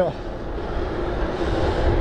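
Wind buffeting the microphone and road noise from a bicycle rolling along smooth asphalt, with a steady hum underneath.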